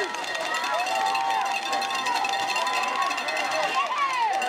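Football stadium crowd: many voices shouting and chattering at once, with no single voice standing out.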